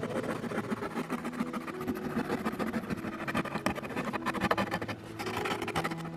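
A small blade sawing through corrugated cardboard to cut out a circle, in rapid scratchy strokes with a brief pause near the end.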